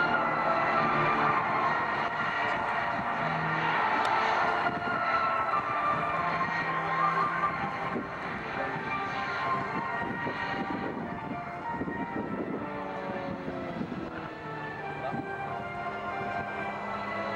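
Engines of Extra 330 aerobatic propeller planes droning through a display manoeuvre, with the pitch shifting as they climb and turn, mixed with music over the public address.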